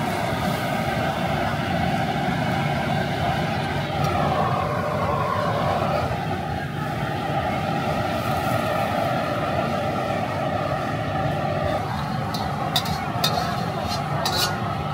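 Gas wok burner running steadily under a wok of noodle soup at the boil. A few sharp metal clinks of a ladle come near the end.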